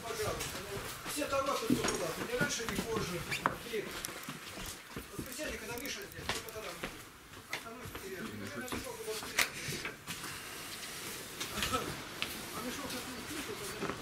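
Indistinct, low voices with scattered sharp knocks and clicks of people walking out through a doorway, the loudest knock a little after the middle.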